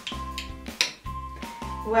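Background music with a steady beat. Just under a second in there is a single sharp click as the plastic flip-top cap of a shampoo bottle snaps open.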